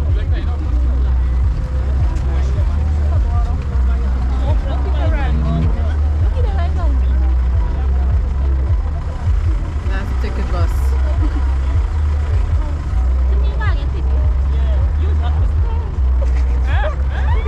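Chatter of a crowd of people waiting in line, several voices overlapping without clear words, over a steady low rumble.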